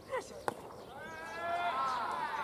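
A single sharp pop of a pitched baseball landing in the catcher's mitt about half a second in, followed by several players' long drawn-out shouts from the field.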